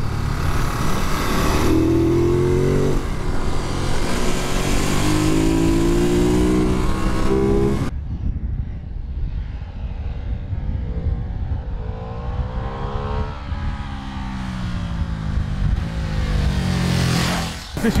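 Ducati Monster SP's V-twin engine accelerating hard, heard from on the bike, climbing in pitch through the gears with a shift about three seconds in. About eight seconds in it gives way to a quieter, more distant engine that rises and then falls in pitch as the bike goes past.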